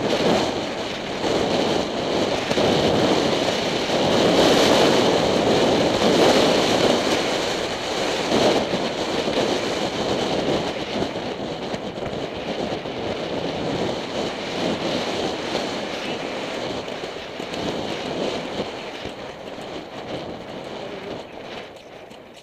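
Wind buffeting the microphone of a camera carried by a cantering horse's rider, with the horse's hoofbeats on turf underneath. The rush is loudest in the first half and dies down over the second half as the pace eases.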